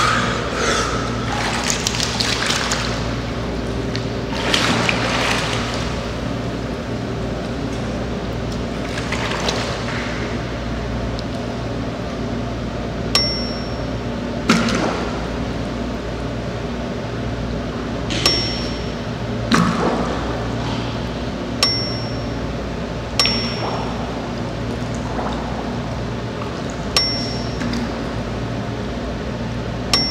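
Water splashing as a swimmer goes under, then a steady low hum with a short bell-like ding every few seconds. The dings are an added sound effect, one for each air ring counted.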